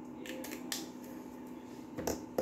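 Plastic cap of a Kingart mini marker being handled and snapped on: a few light clicks within the first second, the sharpest about 0.7 s in.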